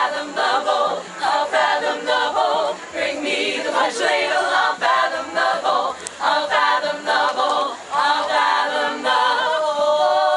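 Female a cappella group singing a drinking song in several-part harmony, with no instruments.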